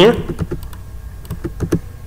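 Computer mouse and keyboard clicks, a few sharp single clicks at irregular intervals, as points are placed and commands entered in a CAD program.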